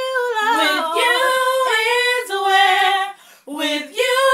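Three women singing a cappella without clear words, holding long notes with vibrato and moving between pitches, with a brief break a little after three seconds.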